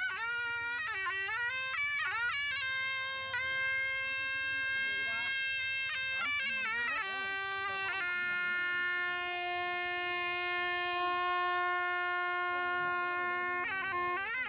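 A kèn, a reed shawm with a flared brass bell, playing a melody. It moves through quick, bending, ornamented notes, then holds one long steady note from about eight seconds in until just before the end.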